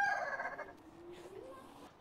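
A rooster crowing, its long drawn-out final note fading out within the first second; after that it is faint and quiet.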